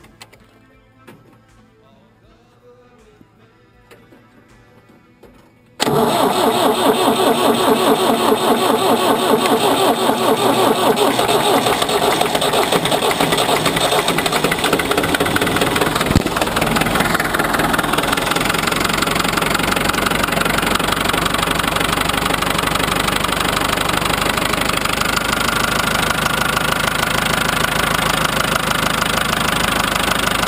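Ford 5000 four-cylinder diesel tractor engine. After a quiet start, it turns over and catches suddenly about six seconds in, then keeps running loudly with a diesel clatter: the air lock in the fuel line is cleared once air is bled out at the fuel-filter bleed nut. One sharp knock about halfway through.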